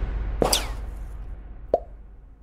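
Two short pop sound effects, the first about half a second in with a quickly falling pitch, the second a brief, sharp pop near the end, over a fading low rumble.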